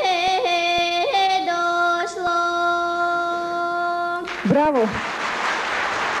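A girl singing a Bulgarian folk song, with quick ornamental flicks in the melody, settling into one long held note that ends about four seconds in with a short sliding vocal flourish. Audience applause breaks out as the song ends.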